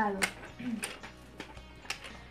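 Clicks from the plastic La Vaca Loca toy cow being handled: about four sharp plastic clicks roughly half a second apart.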